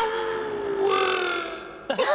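Cartoon scene-transition sting: a low held note slides slowly downward and fades out, with a brighter, higher note joining briefly about a second in.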